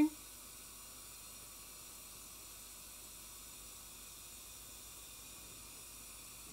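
Steady hiss of compressed air blowing from the air-assist nozzle on a diode laser engraver's head while it engraves, with a few faint steady high tones under it.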